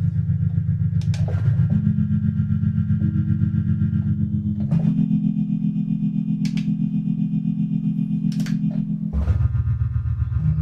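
Modal Electronics Argon8 wavetable synthesizer playing a low, buzzy sustained chord with a fast ripple. The chord changes about one and a half seconds in, again near the middle, and once more about a second before the end. A few faint clicks from its buttons and keys sit above it.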